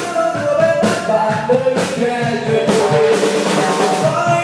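Live rock band playing, with electric and acoustic guitars and a drum kit keeping a steady beat, and a voice singing over them.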